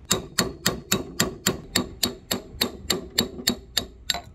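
A hammer striking a steel punch in a steady rhythm, about fourteen blows at a little over three a second, each with a short metallic ring, driving the old broken handle wood out of the eye of a vintage True Temper Kelly Handmade axe head.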